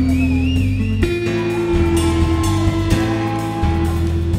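Live rock band playing an instrumental passage between vocal lines: strummed acoustic guitar, electric guitar, bass guitar and drums, with held bass notes that change about once a second. A high wavering lead note sounds in the first second.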